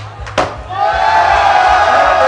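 A skateboard lands on a wooden floor with one sharp clack, then a crowd lets out a loud, sustained shout, with steady bass music underneath.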